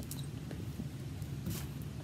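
Faint rustling and light clicks of string being worked through a small wooden craft piece by hand, with a brief scrape about one and a half seconds in, over a steady low room hum.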